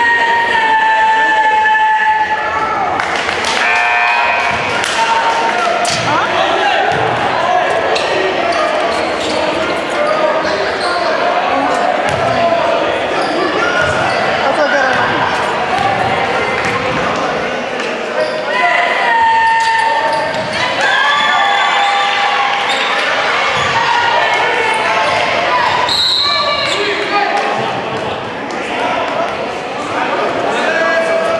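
A basketball bouncing on a hardwood gym floor amid voices and shouts from players and spectators, echoing in a large gymnasium.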